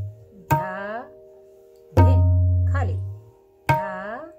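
Tabla played slowly in Dadra taal practice, three combined dayan-and-bayan strokes about a second and a half apart. The bayan's deep bass rings on after each stroke, at times sliding upward in pitch, over the steady tuned ring of the dayan.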